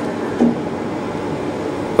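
Steady mechanical hum and hiss of laboratory machinery, with one brief short sound about half a second in.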